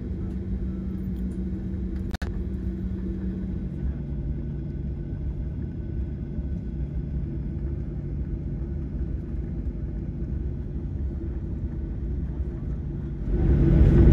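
Cabin noise of a Boeing 737 taxiing: a steady low rumble with an even engine hum at taxi idle. The hum steps slightly lower in pitch about four seconds in, there is a momentary gap just after two seconds, and the noise grows louder near the end.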